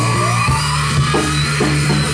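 Heavy metal band playing live: distorted guitars and drums under a long, held, shouted vocal note that slowly rises in pitch.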